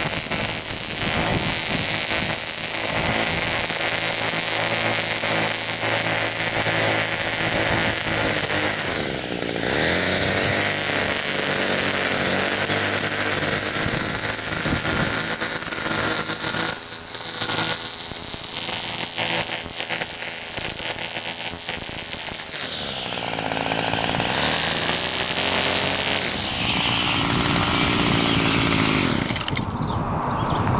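Homelite gas string trimmer's two-stroke engine running while edging the grass along a sidewalk, its line cutting the grass edge. The engine speed dips and comes back up twice, about nine seconds in and again around twenty-three seconds, as the throttle is eased and reopened.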